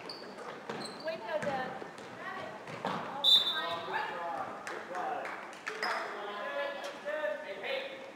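Gym sounds of a youth basketball game: the ball bouncing on the hardwood floor with sharp sneaker squeaks, among spectators' voices in the echoing hall. A short high-pitched sound stands out a little over three seconds in.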